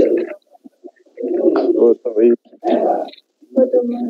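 A voice speaking in short phrases with brief pauses between them, muffled and low-pitched.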